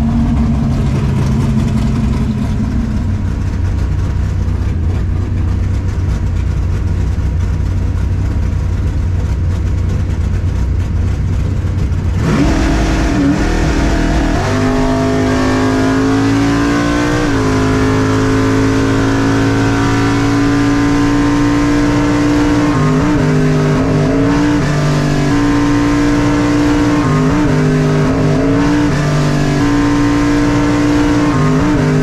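A 1964 Chevelle drag car's engine heard from inside the cabin: a low, steady rumble while staged, then the car launches about 12 seconds in and runs at full throttle down the quarter-mile. The engine note steps in pitch a couple of times as the car goes through the gears, then holds high with a few brief dips.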